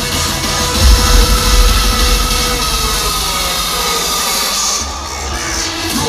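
Amplified music from an open-air concert stage, with held tones and heavy bass, over a large crowd cheering and shouting. The bass thins out in the second half.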